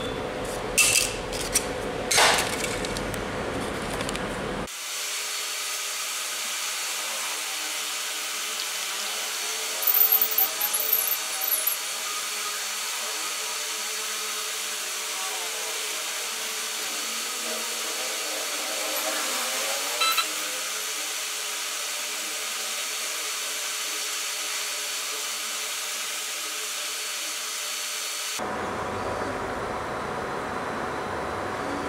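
3D printer running: a steady fan hiss with stepper motors whining, their pitch gliding up and down as the axes move, and a louder patch of movement about ten seconds in. A few clicks and knocks in the first few seconds.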